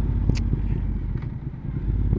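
Triumph Speed Twin's parallel-twin engine running at low road speed, a steady low rumble mixed with wind noise on a helmet-mounted microphone, easing briefly a little past halfway.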